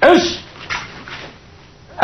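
A karateka's short, sharp vocal exhalation with a falling pitch, made with a punch during a kata. Two much fainter short sounds follow within the next second.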